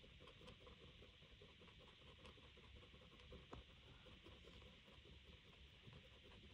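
Very faint tapping and scratching of an acrylic paint marker's tip on paper as small circles are coloured in, with a slightly sharper tick about three and a half seconds in.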